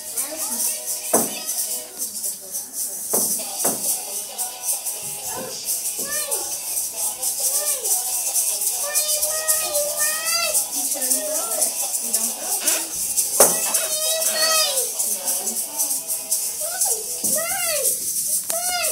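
Several plastic egg shakers rattled continuously, played along to music with voices.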